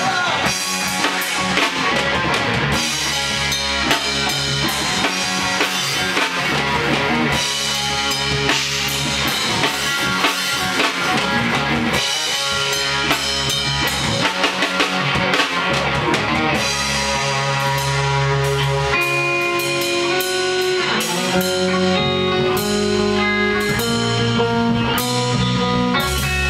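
Rock band playing live in a rehearsal room: electric guitars over a drum kit, loud and steady. In the last several seconds the guitars hold longer notes that step in pitch while the drums keep going.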